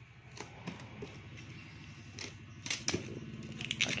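A few short, light clicks and knocks from handling packages and packing things, over a faint steady low hum.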